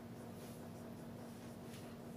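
Marker pen writing on a whiteboard: faint scratching of the felt tip as a word is written, over a steady low hum.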